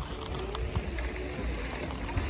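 Low, steady wind rumble on the phone's microphone, with a faint steady hum in the background for about a second.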